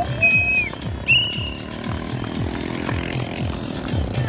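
Two short whistle blasts, each about half a second, in the first two seconds, the first dropping in pitch at its end. Underneath run music with a steady beat and motorcycle engines.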